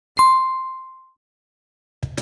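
A single bright bell ding, a subscribe-button notification sound effect, struck once and fading away within about a second.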